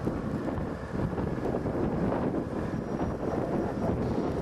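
Wind buffeting the camera microphone in gusts, over a steady low rumble.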